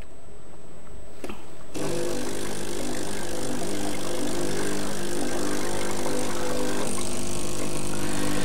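Gaggia Anima Prestige coffee machine's pump running during its descaling cycle, pushing water and descaling solution through the system: a steady buzz with a hiss of water. It starts about two seconds in and runs on steadily.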